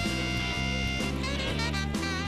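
Instrumental background music in a jazzy style, held notes over a steady bass.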